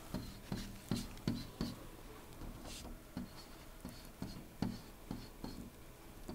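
A stylus writing by hand on a touch screen: a run of short, soft taps and scratches, about two or three a second, as numbers and arrows are drawn.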